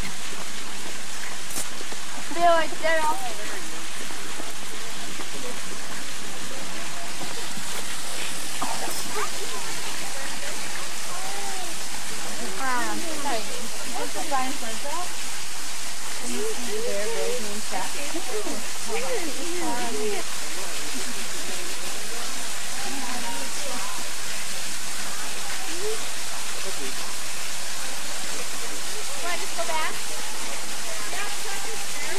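Indistinct voices of people and children talking, none of it clear words, over a steady hiss.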